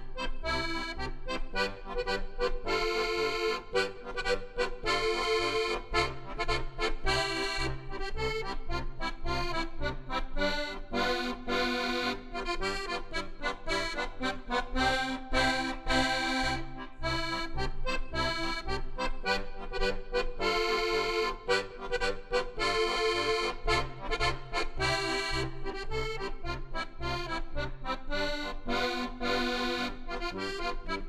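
Solo accordion playing a German folk-style (volkstümlich) tune: a steady alternating bass-and-chord accompaniment under a melody line.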